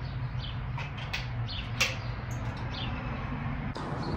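Outdoor background: a steady low hum with scattered short, faint chirps and clicks.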